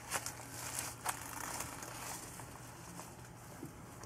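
Dry leaf litter crinkling and rustling under a blue tegu and a hand stroking it, with scattered light crackles that thin out after the first couple of seconds.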